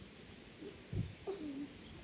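A dull thump about a second in, followed by a short cooing bird call that falls in pitch.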